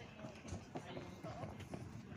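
Racehorses' hooves clip-clopping at a walk on a tarmac path, in irregular strikes, with people talking.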